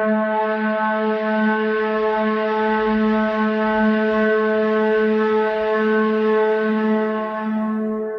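A single long horn-like tone held steady on one low note with many overtones, beginning to fade near the end as a second, higher note enters.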